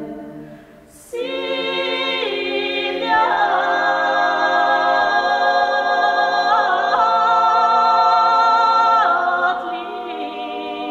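Bulgarian women's choir singing a cappella in held chords. After a brief dip with a short hiss about a second in, the voices enter together. They grow louder as higher voices join about three seconds in, and the chord shifts twice later on.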